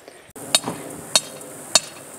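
Sledgehammer striking the top of a half-inch steel rebar fence post three times, about 0.6 s apart: sharp metal-on-metal clinks. The post is being driven into ground so dry and hard that it takes a sledgehammer.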